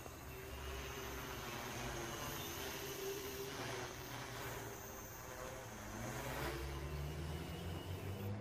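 Distant hum of a quadcopter's four brushless motors (Racerstar BR2212 1000KV) spinning 10x4.7 propellers in flight. The hum holds steady, then its pitch rises near the end as the throttle comes up.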